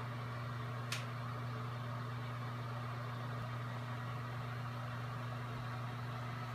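Steady low machinery hum with a light hiss, and one short click about a second in.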